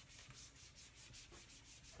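Faint quick back-and-forth rubbing of a whiteboard eraser wiping marker off the board.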